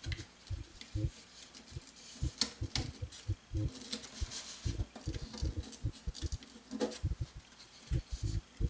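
Utility knife cutting through a styrofoam sheet and the foam being handled: faint, irregular soft knocks with a few sharper clicks and scratchy crunches.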